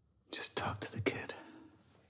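A voice whispering one short line, lasting about a second.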